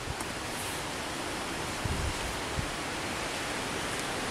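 Steady rushing outdoor wind noise, even and unbroken, with a couple of soft low thumps about two seconds in.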